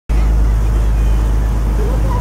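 Tour boat's engine running with a steady low hum.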